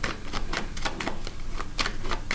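Rapid, irregular light clicking or tapping, several clicks a second.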